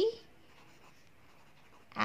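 Pen writing by hand on workbook paper, faint.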